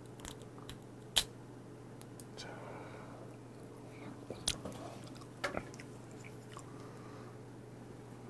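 A cooked whiteleg shrimp's shell being peeled off by hand: a few soft crackles and snaps, the sharpest about a second in and small clusters near the middle, over a faint steady room hum.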